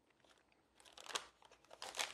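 Close-up chewing of a soft, moist black licorice candy: two short bursts of sticky mouth sounds, about a second in and again near the end.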